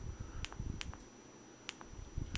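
Maglite XL50 LED flashlight's tail-cap push switch clicked three times, faint and sharp, as the light is stepped through its brightness settings.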